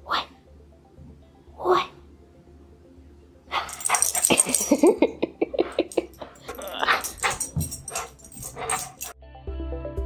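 A dog barking and vocalising in play while tugging and shaking a rope toy: two short calls at the start, then a loud, rapid flurry of barks from about three and a half seconds in. Background music takes over near the end.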